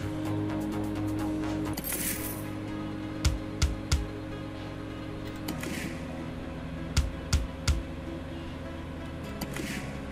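Synot Fruity Gold video slot game sounds: a steady looping electronic tune under the spins. Each spin starts with a short swish, and the three reels stop with three quick clicks about a third of a second apart. This happens twice, and another spin starts near the end.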